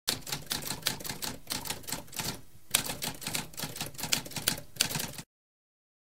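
Typewriter keys clacking in a rapid, irregular run, with a brief pause midway, then stopping suddenly near the end.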